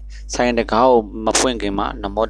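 A voice reciting in short phrases over a steady low hum.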